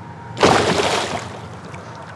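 A hooked musky thrashing at the surface beside a kayak: one sudden splash about half a second in that fades out within the next second.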